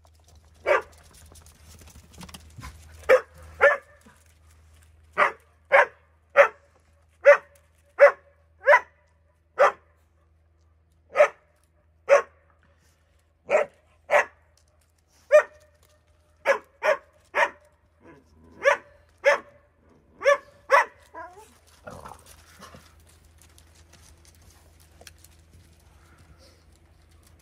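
Dog barking: about twenty short barks in an uneven series, one or two a second with brief gaps, stopping about five seconds before the end.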